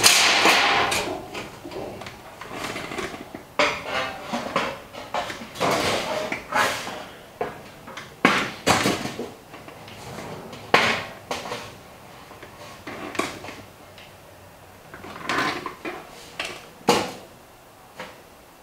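Galvanized sheet metal rattling and flexing as it is handled into a sheet-metal bender, with a string of irregular metal clanks and knocks as the machine's clamp and bending leaf are worked. The loudest rattle of the sheet comes right at the start.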